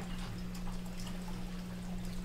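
Room tone: a steady low hum with faint background noise. A cough ends right at the start.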